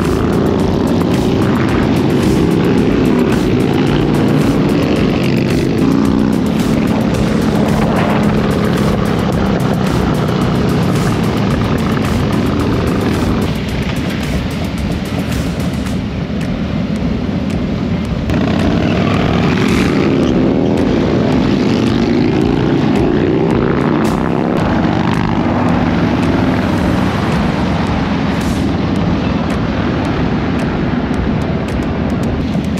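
Several Harley-Davidson V-twin motorcycle engines running and revving as a group of bikes rides off, with music playing underneath.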